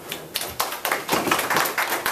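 A small audience clapping in a classroom. It starts at once and thickens into steady applause about half a second in.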